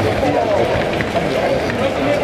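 Outdoor street bustle with indistinct voices close by, a steady noisy background with no single clear event.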